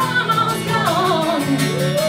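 Live music: a singer's voice carrying a wavering melody over guitar accompaniment, with steady held low notes underneath.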